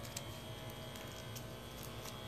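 Faint handling sounds of a pipe-cleaner bracelet being pinched and adjusted by hand, a few small clicks over a low steady room hum.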